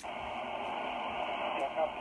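Steady static hiss from an amateur HF radio's speaker on the 20-metre band after the microphone is released, heard through the narrow single-sideband audio passband. A faint, weak voice from the distant station begins to come through near the end.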